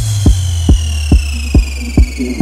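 Electronic dance remix: a steady kick drum about twice a second over a held bass note, with a high synth tone sliding slowly down in pitch.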